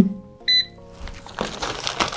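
One short, high electronic beep from the Rosenstein & Söhne air fryer's touch control panel as a button is pressed. From a little past the middle comes the rustle and crinkle of a plastic frozen-fries bag being cut open with scissors.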